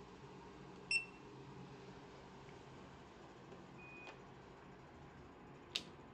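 Card-key reader in a Hitachi elevator car giving a short high beep about a second in as a room key is touched to it, with a fainter beep near four seconds. Near the end comes a sharp click as a floor button is pressed.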